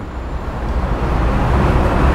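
Rumbling, rushing noise of a passing road vehicle, growing steadily louder.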